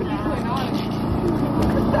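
Men's voices talking over a steady low engine hum.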